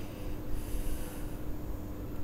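Low wind rumble on the microphone with a faint steady hum, and a short hissing breath close to the microphone from about half a second in, lasting under a second.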